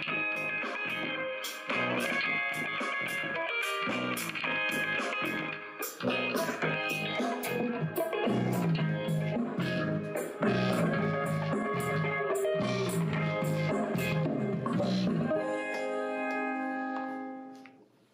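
Guitar-led instrumental music played through the bare speaker drivers of a Bose Wave Music System, then through the drivers fitted with its waveguide tubing. It ends on sustained notes that fade out just before the end.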